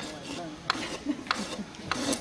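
Hoof rasp scraping the toe wall of a horse's hoof in four short strokes, about one every two-thirds of a second, beveling the toe. Faint voices murmur underneath.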